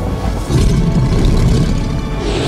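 Deep, loud rumbling that swells about half a second in and holds, under a horror film score.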